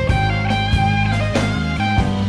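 Slow blues-rock music: an electric guitar plays single sustained lead notes over a bass line and a steady drum beat, with no singing.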